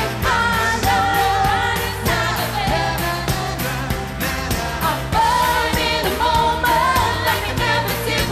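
Live pop song: a woman singing lead with held, gliding notes over a band playing a steady beat.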